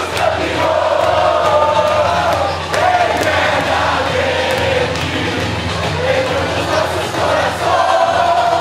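Crowd of football fans in a packed bar cheering and singing together loudly in celebration of a goal.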